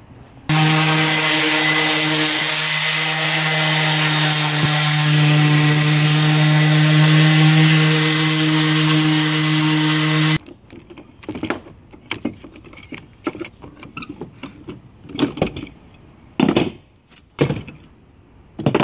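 A handheld random orbit sander runs steadily for about ten seconds, taking dried glue squeeze-out off a Douglas fir board, then cuts off suddenly. After it come a string of sharp clanks and knocks as metal clamps are handled.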